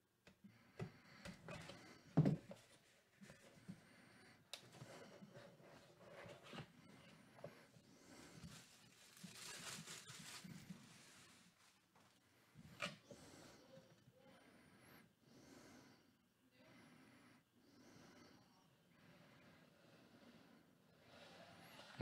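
Quiet handling of a cardboard trading-card box: a small blade slitting its seal, then scattered faint clicks and rustles, with one sharper knock about two seconds in.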